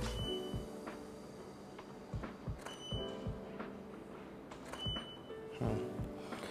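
Background music, with three short high beeps spaced about two seconds apart and a few soft clicks.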